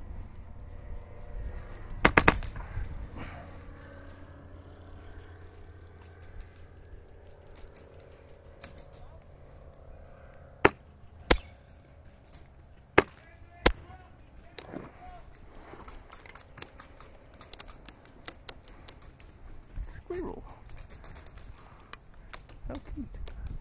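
Airsoft guns firing: a quick burst of about four sharp shots about two seconds in, then four single snapping shots spaced out between about ten and fourteen seconds in.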